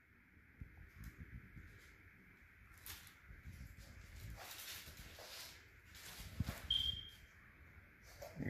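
Faint rustling and a few soft knocks, handling noise as the camera and shoe are moved about, with one brief high squeak near the end.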